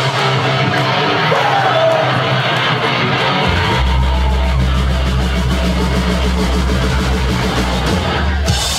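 Live rock band playing loud, heavy rock on electric guitars and drums. The deep bass drops out for the first few seconds and comes back in heavily about three and a half seconds in.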